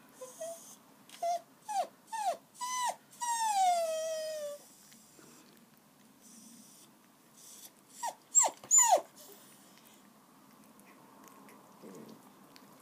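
Young puppy whimpering in a string of short squeaks that fall in pitch, with one longer whine sliding down about three seconds in, then a louder cluster of sharp squeaks around eight seconds in.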